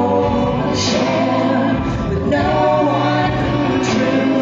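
Singing with backing music, the voice holding long notes over a steady bass.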